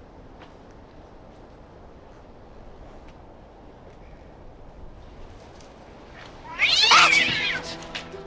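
A cat yowls once, suddenly and loudly, for about a second near the end, after several seconds of quiet background.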